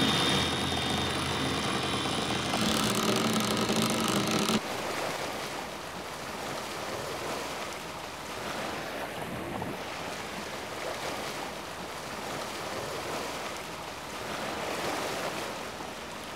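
Wind and sea noise on a sailboat's deck, a steady rushing with wind buffeting the microphone. For the first four and a half seconds a steady whirring hum with fixed tones sits over it, then cuts off suddenly.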